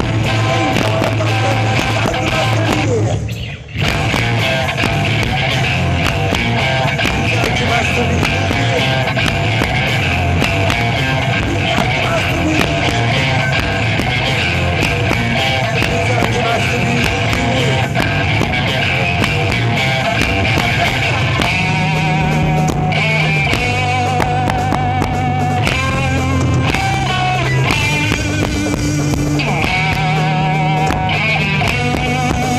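Live rock band playing loud, with two electric guitars and a drum kit. The music drops out briefly about three and a half seconds in, then comes back in.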